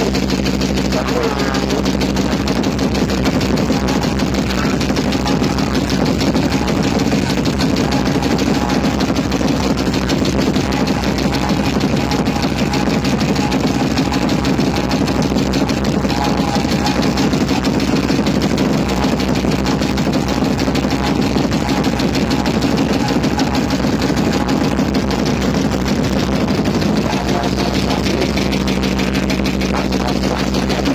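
DJ competition sound system played at full volume, a dense, steady wall of bass-heavy music that overloads the phone's microphone so that it sounds more like a din than a tune.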